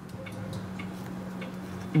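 Room tone: a steady low hum with a few faint ticks.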